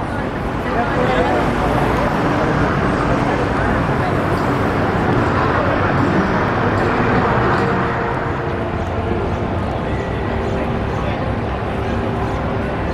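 Busy city street ambience: many voices talking at once over traffic noise.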